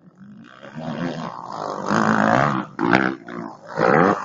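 Motocross dirt bike engine revving hard as the bike comes closer and passes nearby, getting louder from about a second in. It rises and falls in pitch with the throttle, with sharp surges near the end.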